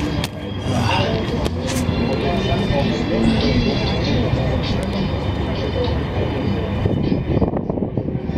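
Voices of several people talking in the background over a steady low rumble.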